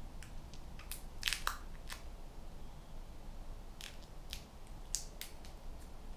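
Short crisp crinkles and ticks of an adhesive plaster being wrapped and pressed tightly round a fingertip, a few at a time, busiest about a second in and again around four to five seconds.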